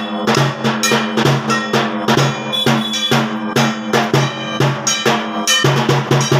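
Fast, steady clanging of metal percussion with drum beats, about four or five strikes a second: Durga puja percussion.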